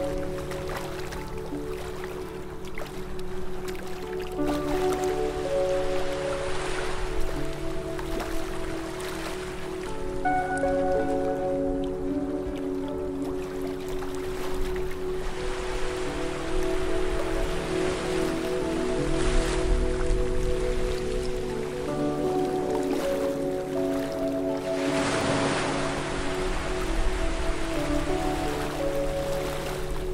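Slow ambient music of long held chords over the wash of sea surf. The waves swell up and fall back several times, the largest about 25 seconds in.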